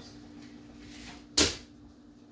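Spoon stirring thick chocolate cake batter in a plastic mixing bowl, with one sharp knock about one and a half seconds in, over a steady low hum.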